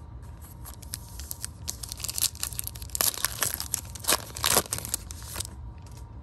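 Foil wrapper of a Panini Prizm football card pack being torn open and crinkled by hand, a dense run of crackling that is loudest in the middle and dies away shortly before the end.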